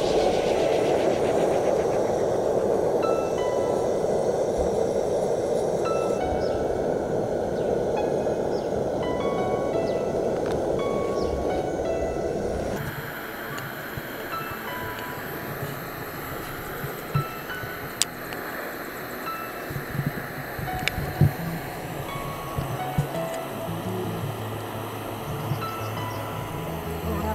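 Hot cooking oil sizzling steadily around a raw egg frying in a pan, under background music with light chime-like notes. About halfway through this gives way to a quieter stretch of a knife cutting a bar of soap on a plate, with a few sharp clicks.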